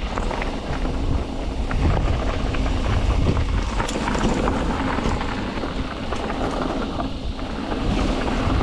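Mountain bike riding fast down a dirt singletrack: tyres rolling over dirt and leaf litter, with wind on the microphone and scattered clicks and rattles from the bike.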